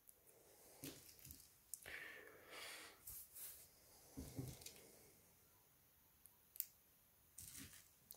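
Faint handling noise: a scatter of small clicks and rustles as a plastic SIM card tray is handled and fitted into a smartphone, with one sharper click about six and a half seconds in.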